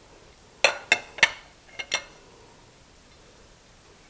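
A plate clinking against a glass mixing bowl as ground beef is tipped in: about five sharp, ringing clinks in quick succession, starting about half a second in and ending by two seconds.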